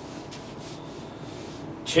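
Paper sliding and rubbing against paper as a written-on sheet is pulled away, heard as a few soft scraping strokes.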